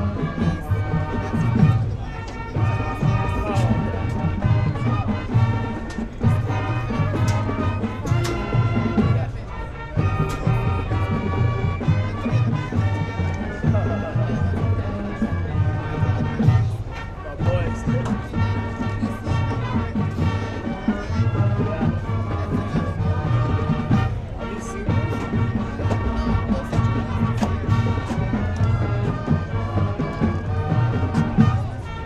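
Marching band playing on a football field: brass, saxophones and drums carrying a tune over a steady beat.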